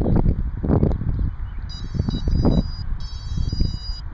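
Wind gusting on the microphone in uneven surges. From a little under halfway in, a string of electronic beeps that change pitch in steps, with a brief break near three quarters through, comes from the quadrotor's electronics as it is readied for flight.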